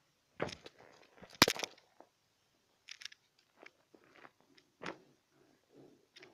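Vinyl beach ball being handled and squeezed as it deflates, its plastic crinkling and crunching in several irregular bursts, the loudest about a second and a half in.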